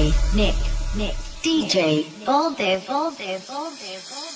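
A breakdown in an electronic dance mashup of Bollywood songs: the beat drops out, leaving a solo vocal line singing with sliding, arching pitch. A low held bass note sits under the first half and fades away about two seconds in.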